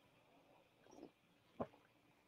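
Near silence in a pause of a talk, with one faint, brief sound about one and a half seconds in, likely the presenter drawing a breath before speaking again.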